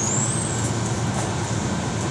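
Running rumble of a moving passenger train coach, heard from inside the carriage. A brief thin high squeal rises slightly and fades within the first half-second.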